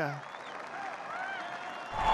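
A crowd applauding, a steady even clatter at moderate volume, with a few faint shouts from the crowd.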